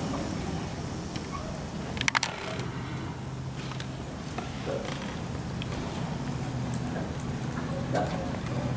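Quiet background of a large indoor riding arena: a steady low hum, with a brief cluster of sharp clicks about two seconds in.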